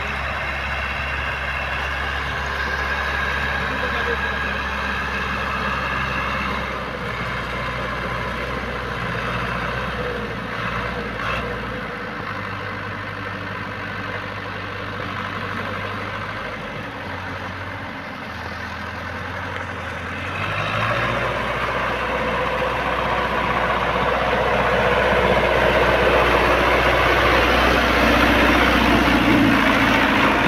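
Tractor diesel engine working under load as it pulls a mounted plough through the soil. Its note steps down about twelve seconds in and again a few seconds later, then rises and grows louder from about twenty seconds in as the tractor comes close.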